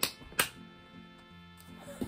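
Two sharp hand claps close together near the start, then quiet background music with faint steady low notes.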